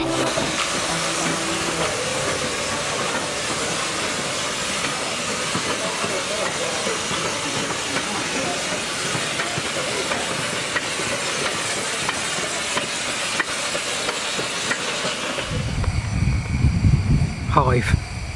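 Steady hiss of a Romney, Hythe and Dymchurch Railway 15-inch-gauge steam train, with faint scattered clicks. About 15 seconds in, a louder low rumble takes over and a brief voice is heard.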